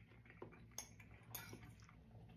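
Near silence, with a few faint clicks of a metal fork against a ceramic bowl as it cuts into a stuffed mushroom.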